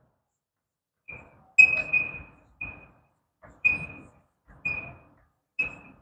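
Chalk writing on a blackboard: a string of about eight short strokes, most of them with a thin, high squeak.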